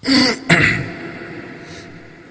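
A person clearing their throat with two short, harsh coughs close together, the second fading away in the room's echo over about a second.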